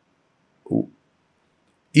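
A pause in speech, silent apart from one short, low vocal sound like a brief 'mm' about two-thirds of a second in.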